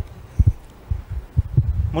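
About six irregular, dull, low thumps of microphone handling and bumping while two men shake hands.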